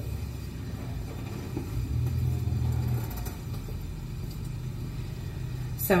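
A steady low rumble with no distinct knocks, swelling for about a second around the middle.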